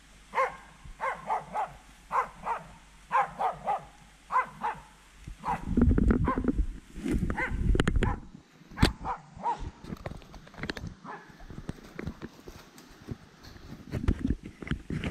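Hunting dogs barking in quick runs of barks through the first five seconds, with a few more barks a little after the middle. Between them comes a few seconds of loud rumbling and knocking from the camera being swung about, and near the end, faint rustling in dry leaves.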